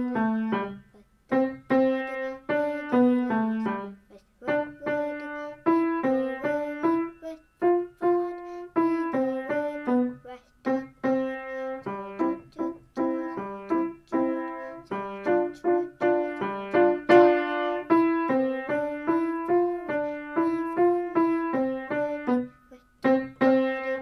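Grand piano playing a simple melody note by note in the middle register, with short breaks between phrases.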